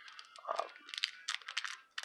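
Wrapper of a sealed trading-card pack crinkling in the hands: a run of short, irregular crackles.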